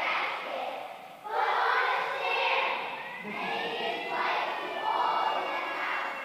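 A group of young children's voices together, several loud stretches of unison speaking or singing with some drawn-out, gliding notes and a short lull about a second in.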